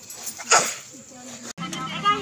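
A dog barks once, short and sharp, about half a second in, over people talking in the background.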